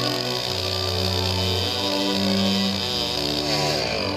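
A chainsaw running under load as it cuts through a thin tree trunk, mixed under background music with held notes.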